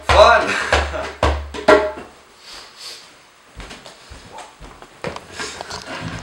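The last few hand-drum strokes of a jam, about four hits with a deep thud in the first two seconds, with a voice over the first stroke. After that come quiet rustling and a few soft knocks as the players move.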